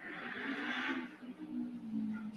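A breath drawn in close to a desk microphone, a soft hiss lasting about a second, with a faint low steady hum under it.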